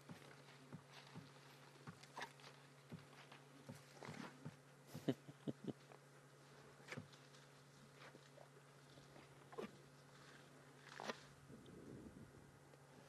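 Faint, scattered snaps and crunches of elephants feeding close by, over a steady low hum; the snaps cluster in the middle and again near the end.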